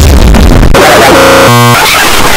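Extremely loud, heavily distorted and clipped electronic music and noise, a dense cacophony with a stuttering, glitch-like repeated chord about halfway through.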